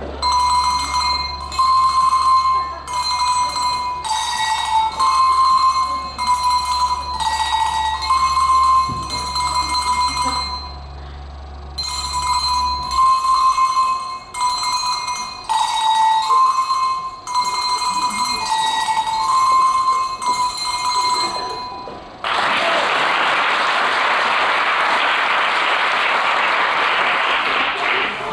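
Hand bells rung one at a time to play a simple tune, note by note at a little under one a second, the phrase played twice with a short pause between. Then a long burst of applause.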